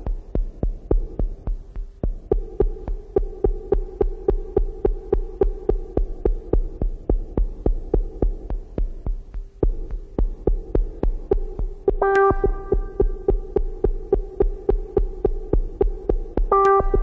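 Electronic dance music from a DJ mix: a deep kick drum pulsing fast and steadily under a sustained drone. A brighter synthesizer melody comes in about twelve seconds in.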